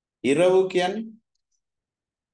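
A short spoken utterance, about a second long, a word or two, with silence on either side.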